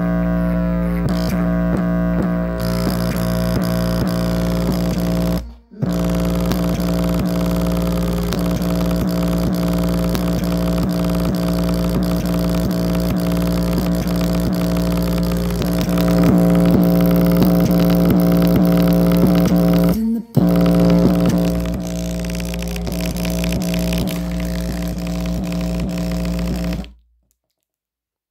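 Bass-heavy music played at full volume through a JBL Flip 4 portable Bluetooth speaker, its passive radiator flexing hard, pushed near the point of blowing. Sustained deep bass notes run under the music, which cuts out briefly twice and stops abruptly near the end.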